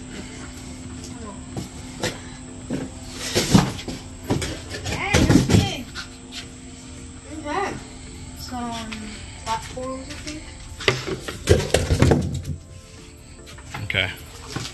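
Large cardboard box being opened and unpacked: scattered knocks, scrapes and rustles of cardboard and packed parts, over background music with brief voice sounds.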